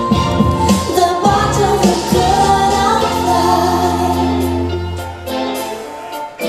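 A comic stage song: a woman singing over instrumental accompaniment, with a long held, wavering sung note over a sustained low note in the middle. The music eases off near the end.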